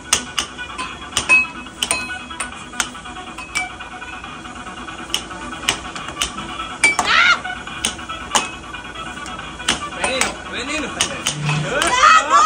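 Air hockey game: the plastic puck and mallets clacking in quick irregular hits as the puck is struck and rebounds off the table's rails, over steady background music.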